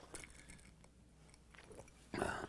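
Near silence: room tone with a low steady hum and a few faint, short clicks.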